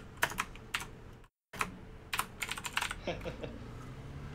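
Computer keyboard typing heard through a voice-chat microphone: scattered key clicks. The audio cuts out completely for a moment about a second in.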